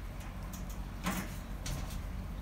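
J-clip pliers crimping a metal J-clip onto welded wire mesh: two short sharp clicks, about a second in and near the end, over a steady low background hum.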